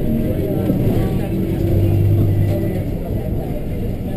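City bus running along, heard from inside the cabin: a steady low engine and road rumble, with the engine drone coming up more clearly for about a second in the middle.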